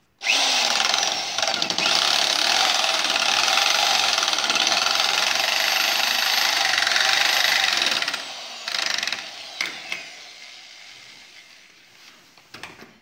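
Corded electric drill running at steady full speed for about eight seconds while working into the wood at the foot of a door frame, then stopping, with a few clicks as the sound dies away.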